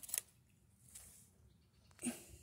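Near quiet, with a few faint short clicks around the start and again near the end.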